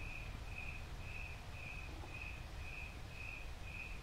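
A cricket chirping in a steady rhythm, about two short chirps a second, all at the same high pitch, over faint background noise.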